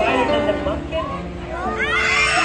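Background music with long held notes under high, wavering children's voices from the audience; near the end a burst of high children's voices rises.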